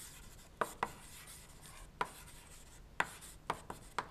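Chalk writing on a blackboard: a handful of sharp, irregularly spaced taps as the chalk strikes the board, with faint scratching between them.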